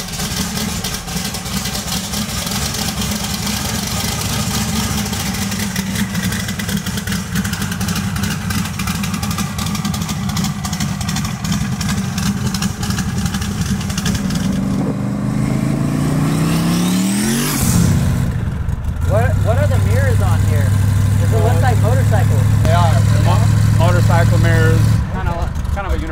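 Twin-turbo 408 Windsor small-block Ford V8 running with a fast, choppy pulse, then revved once with the pitch climbing steeply. After a break it settles into a louder, steady drone with wavering higher tones over it.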